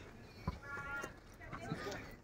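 Faint voices of people nearby, with one sharp knock about half a second in.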